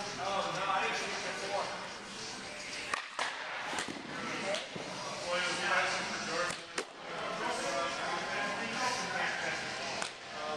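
A pitched baseball popping into a catcher's mitt, a sharp single crack a little after two-thirds of the way through, with a smaller one near the middle, over indistinct background voices.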